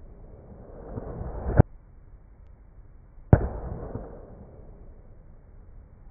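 Edited-in sound effect: a noisy swell that builds for about a second and cuts off sharply, then, after a short gap, a sudden bang that dies away over about a second. It is the same sound played backwards, then forwards.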